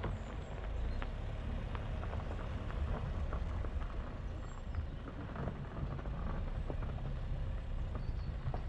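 A car rolling along a gravel road: a steady low rumble from tyres and engine, with many small crackles and pops of gravel under the tyres.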